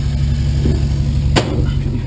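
Towplane's propeller engine running steadily, heard as a low, even drone from the glider cockpit while the aircraft lines up for an aerotow. A single sharp click about one and a half seconds in.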